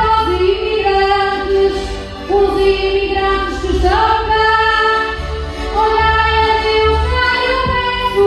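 A woman singing a verse of a desgarrada, the Portuguese improvised sung duel, through a PA microphone. Her held, gliding notes ride over instrumental backing with a low bass that repeats about once a second.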